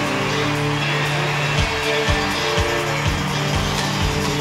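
Live rock band playing: a held chord rings out, and a kick drum comes in about a second and a half in, beating about twice a second.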